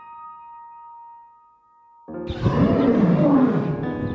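Sustained keyboard notes fade away, then about two seconds in a loud lion roar with a swooping pitch cuts in over the music.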